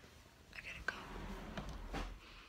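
Faint whispering, with a single sharp click just before a second in.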